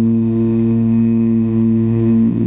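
A male qari's voice holding one long, steady low note, a drawn-out vowel of Quran recitation (tilawat), sung into a handheld microphone.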